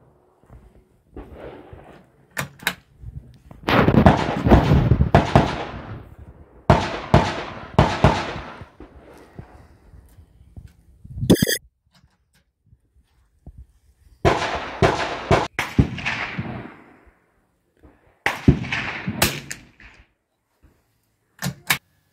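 Walther .22 LR target rifle firing Eley .22 LR match ammunition, single shots several seconds apart. Each shot is a sharp crack with a echoing tail that dies away over a second or two.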